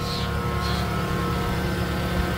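Parked 2012 Toyota Prius running, heard from beneath the car: a steady hum with a low held drone and fainter even tones above it.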